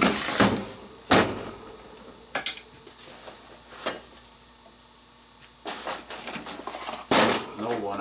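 Steel lawnmower flywheel with its toothed ring gear being shifted on a sheet-metal workbench. Metal clanks and scrapes, loudest at the start and again about a second in, then lighter knocks, and a burst of rougher handling with another loud clank near the end.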